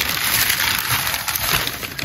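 Thin plastic bag rustling and crinkling as it is handled close to the microphone.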